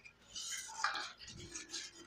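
A spoon stirring and scraping around a pan as a just-added liquid is mixed into a thick masala, in a run of short, irregular scratchy strokes.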